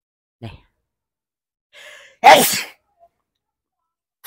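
A man sneezes once, sharply and loudly, just after a short breathy intake, a little past the middle.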